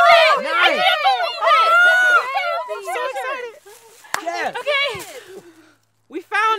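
Several people's excited voices exclaiming and squealing at once, overlapping; they thin out in the second half and fade away just before the end.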